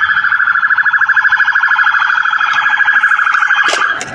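Police car siren sounding in a rapid, even-pitched pulsing warble as backup units arrive. It is loud and steady, and it cuts off abruptly just before the end.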